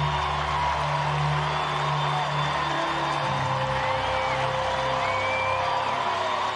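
Ballpark music playing over the stadium sound system, with a steady bass line, over crowd noise.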